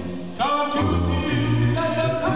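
Male a cappella vocal group singing live in close harmony through microphones, a lead voice over sustained low bass notes. The voices drop out briefly about a third of a second in, then come back in with a rising note.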